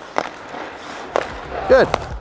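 Two sharp knocks about a second apart as a hockey goalie plays the puck with his stick on the ice.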